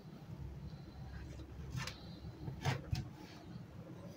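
Quiet room tone with a steady low hum and two faint, brief rustles, about two seconds in and again a second later, from a tape measure and organdy fabric being handled on a table.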